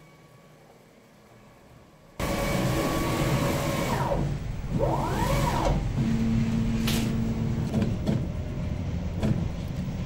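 CNC router's stepper motors and planetary gearboxes driving the axis as the machine jogs the bit to the end of the Y axis: a loud mechanical whine that starts suddenly about two seconds in. Its pitch slides down and up around the middle as the motion slows and speeds up.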